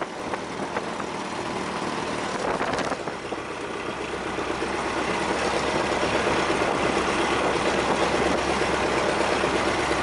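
Stampe SV4B biplane's engine running on the ground, heard from the open cockpit. It picks up from about three seconds in, growing louder, then holds steady.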